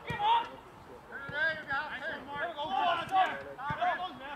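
Players shouting and calling to one another on an outdoor football pitch, several voices overlapping, with a single thud near the end.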